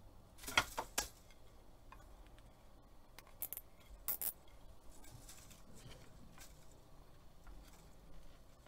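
A plastic zip tie being pulled through its ratchet to cinch warp threads to a loom's apron rod: short ratcheting rasps in a few bursts, the loudest about half a second in, more around three and a half and four seconds in, then fainter ticks.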